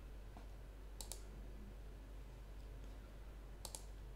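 A few light computer mouse clicks over a faint steady hum: a single click about a third of a second in, a quick pair at about one second, and another quick pair near the end.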